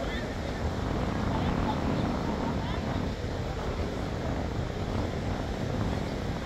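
Steady beach ambience: a continuous rush of wind on the microphone and surf, with faint voices of people nearby.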